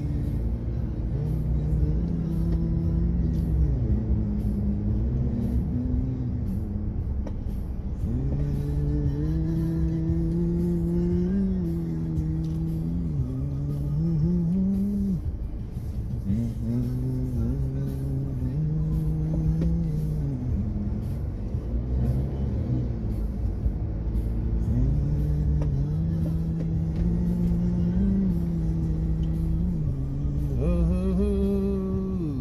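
Steady low road rumble of a car driving in slow traffic, heard from inside, under a slow wordless melody in a low male range with long held notes that slide between pitches.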